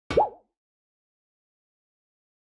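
A short cartoon 'plop' sound effect with a quick upward pitch sweep that wobbles as it fades, lasting about a quarter second right at the start.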